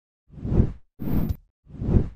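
Three short whoosh sound effects, one after another, each swelling and fading, accompanying a YouTube subscribe-button animation.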